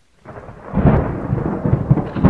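Loud, rough, rumbling storm noise like thunder and rushing wind, standing for a tornado; it swells in during the first second and then runs on unevenly.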